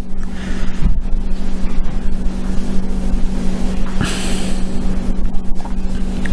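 Steady rumbling background noise with a constant low hum. A soft thump comes about a second in, and a brief breathy hiss about four seconds in.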